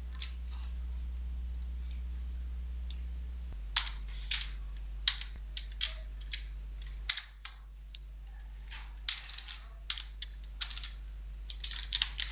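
Computer keyboard keys clicking in short, irregular runs as commands are typed into a terminal, over a steady low hum.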